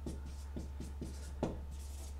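Marker pen writing on a paper sheet, a string of short strokes a fraction of a second apart, with one sharper tap about one and a half seconds in. A steady low hum runs underneath.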